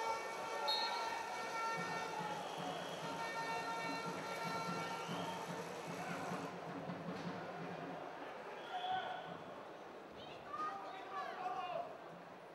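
Indoor wrestling-arena crowd: general chatter and voices over a steady background din, with louder calling voices near the end.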